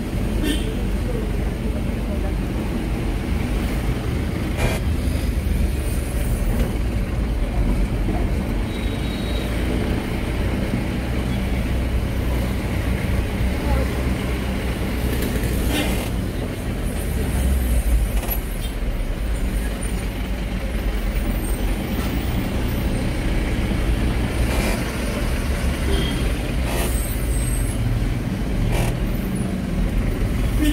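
Van engine and road noise heard from inside the cabin while driving: a steady low drone, broken now and then by short knocks and rattles.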